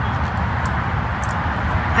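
Steady rush of distant road traffic, an even noise with a low rumble and no single event standing out.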